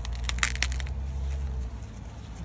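Corn husks and leaves crackling and snapping as hands pull at an ear of corn on the stalk: a quick run of sharp cracks in the first second, then softer rustling.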